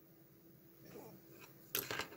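Quiet room tone with faint handling noise from fingers on a small circuit board, then a short sharp click near the end.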